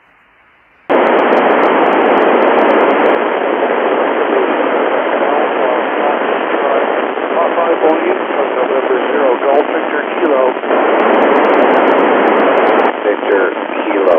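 FM satellite downlink from SO-50 received on an Icom IC-9700. About a second in, the receiver opens to loud, steady hiss, and faint, garbled voices of other operators come through the noise, more clearly in the second half.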